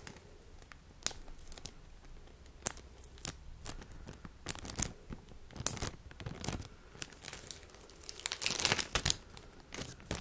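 Packaging bags being handled and packed together, crinkling and rustling in irregular bursts. There is a longer, denser stretch of crinkling near the end.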